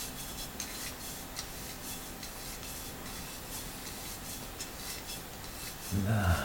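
Faint rubbing with light scattered clicks as a glazed ceramic lamp base is turned and worked onto a brass lamp-holder fitting by hand.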